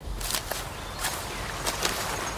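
Footsteps crunching through dry leaves and twigs, irregular steps over a steady outdoor hiss.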